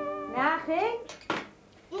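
A held music chord ending, then a brief bit of a woman's voice and a sharp clink of crockery about a second in.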